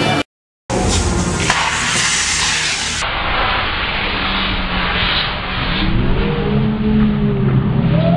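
A large fire burning with a steady, loud rushing noise, after a brief drop to silence at the start. From about halfway, low droning tones and slow rising-and-falling gliding tones come in over it.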